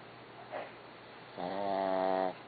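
Dog snoring: one long snore with a steady pitch starts about one and a half seconds in, after a faint short snuffle near the start.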